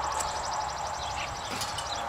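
Outdoor background with a steady hiss, a few faint short bird chirps, and a high, rapid trill through the first part.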